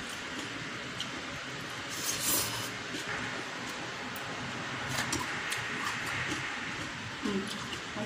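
Close-miked eating sounds: chewing and wet mouth noises as rice and fried instant noodles are eaten by hand, over a steady background hiss with a few small clicks and a brief louder noise about two seconds in.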